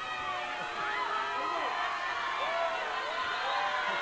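Large crowd of fans cheering and screaming, many high voices shouting over one another at a steady level.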